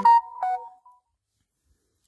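Short electronic jingle of a few steady notes stepping up in pitch, like a phone ringtone or app notification tone, fading out about a second in.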